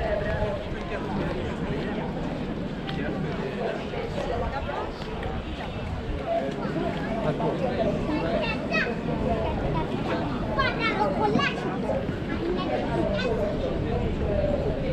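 Outdoor crowd chatter from passers-by talking around the camera, no one voice standing out, with higher-pitched children's voices in the second half.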